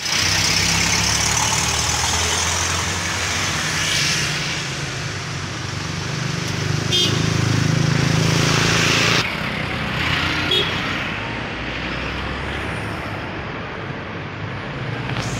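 Road traffic outdoors: a steady rumble of passing cars and motorcycles, the sound changing abruptly about nine seconds in.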